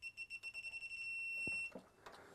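Digital torque wrench adapter beeping as a camshaft sprocket bolt is tightened toward the set 32 N·m. The short high beeps come quicker and quicker, then merge into one steady tone for about the last half second before stopping. That steady tone signals the target torque has been reached.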